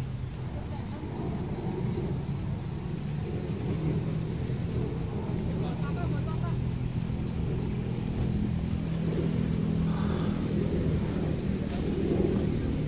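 A steady low engine drone, like a motor vehicle running nearby, growing slightly louder over the seconds, with faint voices in the background.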